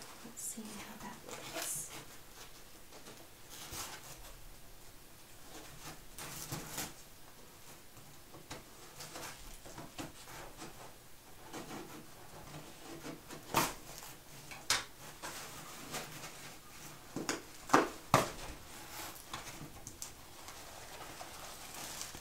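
A small cardboard box and its paper packing being handled, with quiet rustling and scraping. In the second half come several sharp snips from scissors cutting the box open.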